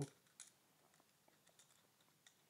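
Near silence, with a faint click a little way in and a few tiny ticks after it: small parts of a follow-focus control being handled and unscrewed by hand.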